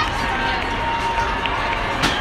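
Crowd hubbub and distant voices echoing in a large indoor track hall, with a faint steady tone running underneath.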